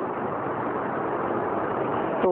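A vehicle's steady rushing noise, growing louder as it draws near.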